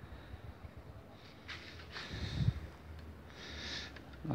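A man breathing out sharply through the nose several times while he struggles one-handed to work the coaxial cable connector loose from a satellite dish LNB, with a low handling thump about two and a half seconds in.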